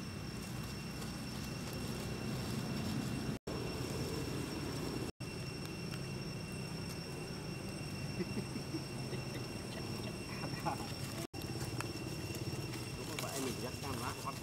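Outdoor ambience: a low, indistinct murmur like distant voices under a steady thin high-pitched whine, with light rustling and clicks in dry leaves over the last few seconds.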